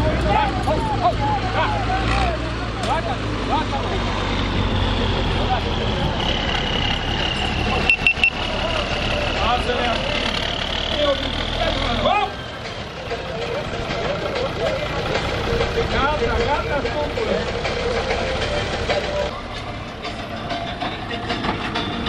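A tractor engine idling steadily under crowd voices, its low rumble stopping abruptly about halfway through.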